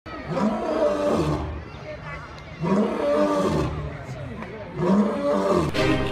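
Male lion roaring three times, each call about a second long and rising and then falling in pitch.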